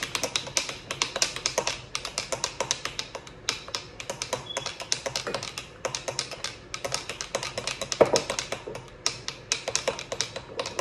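A spoon stirring a cocktail mix in a pitcher, knocking against the sides in a rapid, uneven run of clicks, with one louder knock about eight seconds in.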